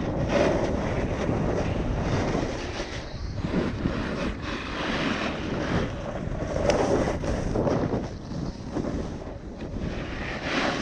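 Wind rushing over the microphone of a snowboarder's body-mounted camera, with the board scraping and hissing over packed snow. The noise swells and fades every second or two as the rider turns.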